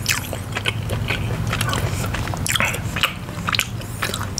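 Close-miked chewing of teriyaki turkey jerky: irregular, sharp mouth and chewing noises. A steady low hum lies underneath.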